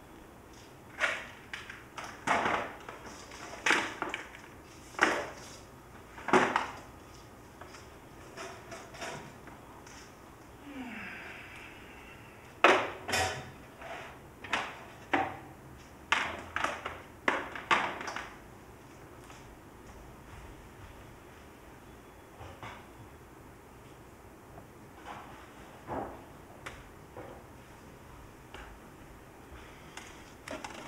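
Equipment being handled and set down: a string of irregular knocks and clunks, busiest in the first eighteen seconds, then sparser and fainter.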